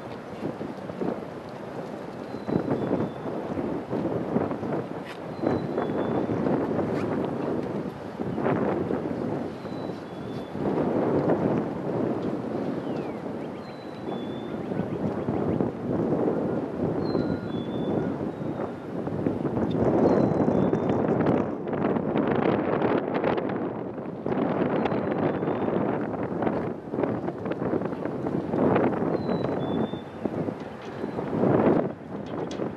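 Wind buffeting the camera microphone in uneven gusts, with faint, short high chirps every second or two.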